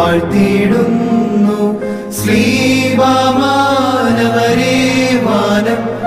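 Male voices singing a Malayalam Orthodox liturgical hymn in a chant-like style, over steady held low notes that change pitch about two and four seconds in.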